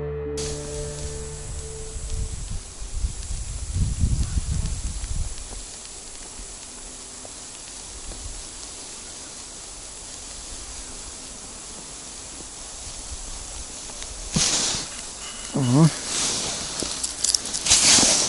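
Steady outdoor hiss with low wind rumbles on the microphone for a few seconds. Near the end come rustling handling noises and a few short vocal sounds from the angler as a small perch is pulled up out of the ice hole.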